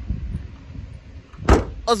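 SUV rear liftgate pulled down and shut with one loud bang about one and a half seconds in.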